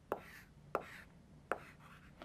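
Chalk writing on a blackboard: three sharp taps as the chalk strikes the board, about 0.7 s apart, with faint scratching between them as the letters are drawn.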